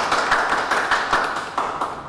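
Applause of fast, dense hand-clapping that stops just before two seconds in, greeting a correct quiz answer.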